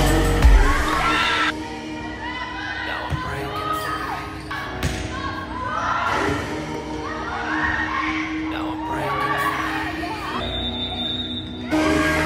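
Live gym sound of a volleyball rally: shouts and cheers from players and crowd, with a few sharp thuds of the ball being hit. Music plays loudly for the first second and a half, drops away, and comes back loud just before the end. A short, high, steady whistle sounds shortly before the music returns.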